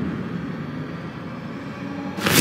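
Cinematic logo-intro sound design: a steady, rumbling drone made of several held tones that slowly fades, then begins to swell again near the end.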